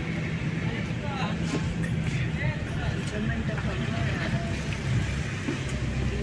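Car engine running steadily with low road rumble, heard from inside the cabin as the car moves slowly.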